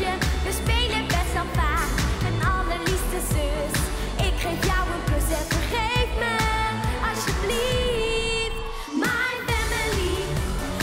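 A girl singing an upbeat pop song live into a microphone over a backing track with a steady, heavy beat. The bass and beat drop out for a moment near the end, then come back.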